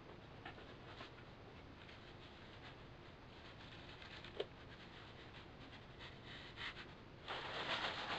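Faint handling sounds and one sharp tick about halfway through. Then, near the end, a clear plastic sheet rustles and crinkles as it is pulled up off the car.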